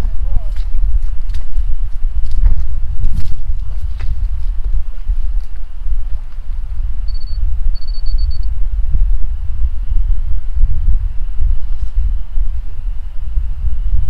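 Wind buffeting the microphone: a heavy, uneven low rumble. A short high electronic beep comes in two parts about seven to eight seconds in, from the level receiver used to take the grade reading.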